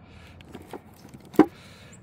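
LiPo battery packs being handled and set into a combat robot's battery box: a few light clicks, then one sharp knock about one and a half seconds in.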